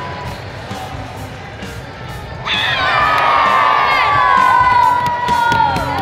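A crowd cheering, with high-pitched shouts and whoops, breaking out suddenly about two and a half seconds in over music.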